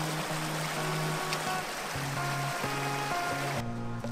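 Small mountain brook splashing over rocks in a little cascade, a steady rush of water over background music. The water sound cuts off suddenly near the end.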